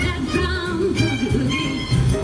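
Swing orchestra playing live: a wavering melody line from a female singer and violins over a steady bass and drum beat.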